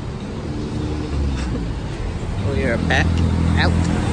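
Street traffic: a vehicle engine idling with a steady low hum, and a voice speaking indistinctly from about two and a half seconds in.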